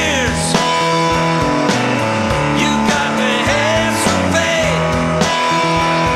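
Instrumental break in a rock 'n' roll song: lead guitar playing bending, sliding notes over bass and drums.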